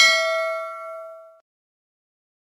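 A single bell ding from a subscribe-button notification sound effect, ringing out with a clear metallic tone and fading away. It ends about one and a half seconds in.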